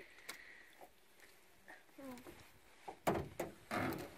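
Mostly quiet with a few faint clicks, then in the last second splashing as a hooked pike thrashes in the water and is scooped into a landing net.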